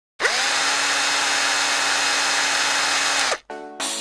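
Electric hair clipper switched on close to the microphone: its motor whirs up in pitch, runs steadily for about three seconds, then is switched off, the pitch falling as it stops. Music begins right after.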